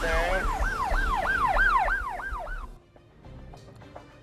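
Siren sound effect wailing in quick rising-and-falling sweeps, about three a second, which cuts off a little under three seconds in. After it come only faint scattered ticks.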